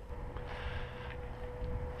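Quiet background between remarks: a low rumble under a steady thin hum, with a brief soft hiss about half a second in.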